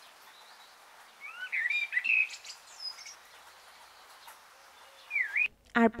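Birds chirping: a cluster of quick gliding chirps and whistles about a second in, and one dipping whistle near the end, over a faint steady hiss.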